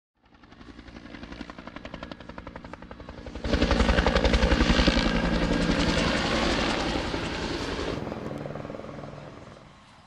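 Helicopter rotor chopping in a fast, even beat. It fades in, gets much louder suddenly about three and a half seconds in, then fades away over the last couple of seconds.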